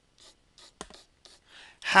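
A stylus scratching on a drawing tablet in a run of short, quick strokes as shading lines are drawn across an oval.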